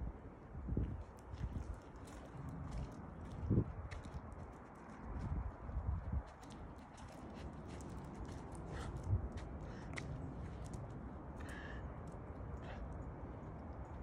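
Footsteps and a dog's paws on a wet asphalt road during a leashed walk, with scattered light clicks and irregular low bumps on the microphone.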